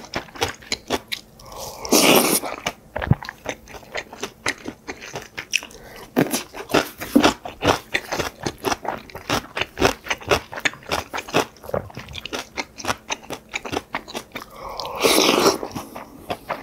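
Close-up eating sounds: a person chewing and crunching mouthfuls of bibimbap, with quick clicks and scrapes of a spoon in a ceramic bowl. Two longer noisy sounds come about two seconds in and just before the end.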